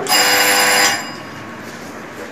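A loud ringing tone made of several steady pitches sounds for just under a second and stops abruptly, leaving quieter room noise.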